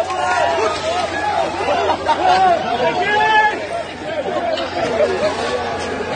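A crowd of voices shouting and calling over one another, with no single speaker standing out.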